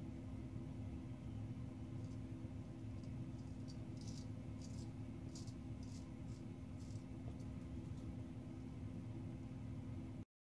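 Gold Dollar 66 straight razor scraping lather and stubble off the jaw and neck in a run of about a dozen short, faint strokes, starting about two seconds in. A steady low hum runs underneath.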